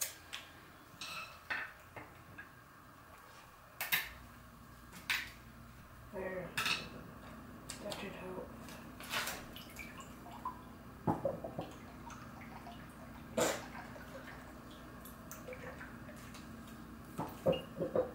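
Sharp, scattered taps and clinks as a whole coconut knocks against the rim of a glass while it is held upside down to drain through holes punched in its eyes. A low steady hum comes on about four seconds in.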